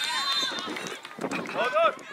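Voices shouting across an outdoor football pitch: a loud, high-pitched call that runs into the start and another about a second and a half in.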